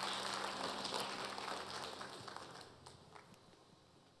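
Congregation applauding after the closing amen, the clapping fading away over the few seconds.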